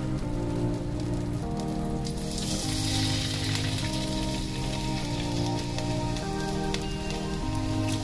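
Background music of held chords that change about once a second, over a fine crackling sizzle from a hot skillet of sausage drippings; the sizzle is strongest around the middle.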